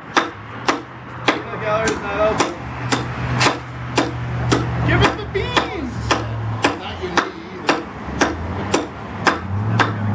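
A heavy knife chopping repeatedly into a wooden 2x4, a steady run of sharp chops at about two and a half a second.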